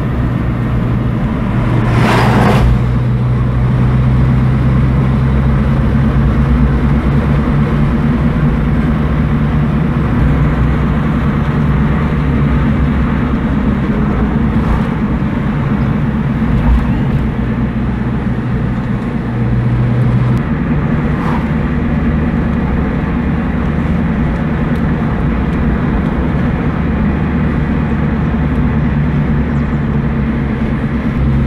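Car engine and road noise heard from inside the cabin while driving: a steady low hum, with the engine note shifting about twenty seconds in. A brief whoosh about two seconds in.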